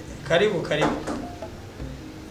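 A man's voice speaking briefly over soft background music.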